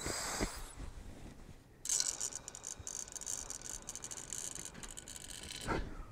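A long, slow inhalation through a volumetric incentive spirometer, drawn with the back intercostal muscles while bent forward to keep the diaphragm from expanding. It is a steady airy hiss that starts about two seconds in and lasts nearly four seconds, with faint ticking from the device as its piston rises.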